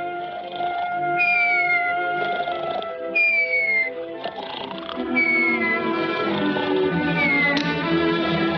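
Cartoon orchestral score of held, quiet notes, with a short falling whistle-like glide about every two seconds and a sharp click near the end.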